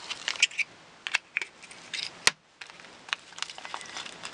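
Scissors snipping small black foam adhesive squares (Dimensionals) in half: a scatter of short snips and clicks, with one sharp click a little past halfway.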